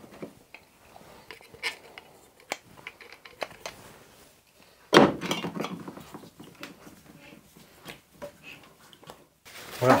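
Scattered light clinks and knocks of hard objects being handled and set down, with a louder clatter about five seconds in.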